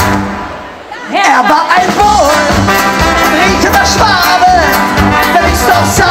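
A live ska band with trombone, trumpet, acoustic guitar and drums playing loudly. The music breaks off right at the start and comes back in about a second later.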